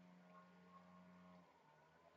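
Near silence: a faint steady low hum that dips briefly near the end.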